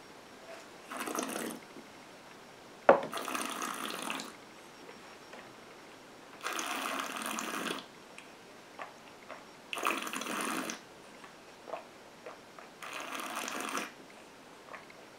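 Whisky being held and worked around a taster's mouth. Five breathy, wet draws and breaths of air pass over the mouthful, each about a second long and a few seconds apart. There is a single sharp knock about three seconds in.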